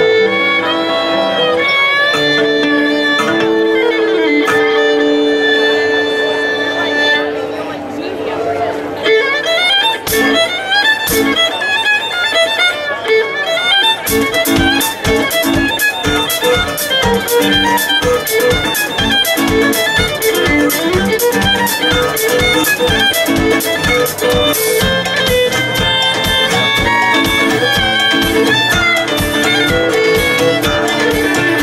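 Live trio playing a bluegrass fiddle tune: fiddle carrying long held notes over acoustic guitar, then a drum kit coming in about halfway with a fast steady beat under the fiddle melody.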